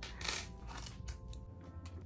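Small metal padlock and key clinking as the padlock is worked off a notebook's metal hasp, a few light clicks.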